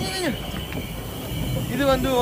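A person's voice briefly at the start and again near the end, with quieter outdoor background noise between and a faint steady high tone underneath.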